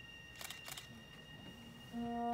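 A quiet concert hall with a faint steady high whine, broken by two quick clicks about half a second in, a quarter of a second apart.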